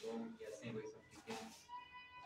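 Voices talking, then a long, steady high-pitched call starting near the end.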